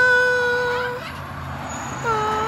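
A young child's long, steady vocal note, a drawn-out whine or call, that breaks off about a second in.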